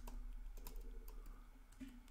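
Faint typing on a computer keyboard: a few scattered key clicks over a low steady hum.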